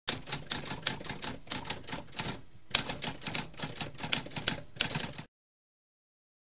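Typewriter typing: a quick run of key strikes with a short break about two and a half seconds in, cutting off abruptly after about five seconds.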